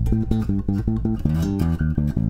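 Electric bass with a Mudbucker pickup, played DI through a Heritage Audio Successor compressor: a fast run of short plucked notes, about six a second, each with a sharp attack, moving up in pitch about halfway through.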